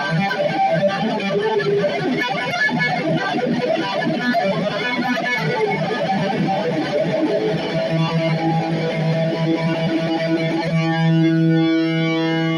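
Squier electric guitar playing a heavy metal lead line of quick single notes. About eight seconds in it settles into a held low note, and near the end a final sustained note rings out.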